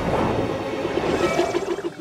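Cartoon underwater sound effects: bubbling, gurgling water under faint background music.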